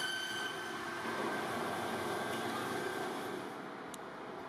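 Steady, even running noise of machinery, with a faint hum.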